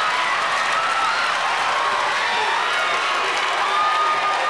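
Large audience laughing and applauding steadily, with voices mixed into the clapping.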